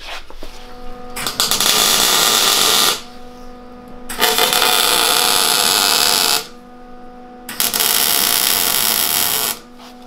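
MIG welder tack-welding steel tubing: three bursts of arc crackle, each about two seconds long, with a steady hum in the pauses between them.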